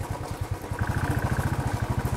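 Royal Enfield Classic 350's single-cylinder engine running at low revs with a steady, even beat.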